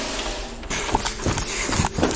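Rapid, irregular knocking and clattering that starts about two-thirds of a second in, after a brief hiss-like rustle.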